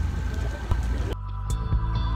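Low outdoor rumble, then about halfway through an abrupt change to background music: a steady droning hum with a deep throbbing bass and a few light ticks.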